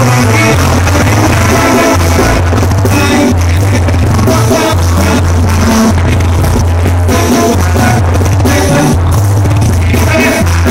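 Loud live banda sinaloense music: a Mexican brass band with a low bass line, likely tuba, stepping between notes under brass and percussion.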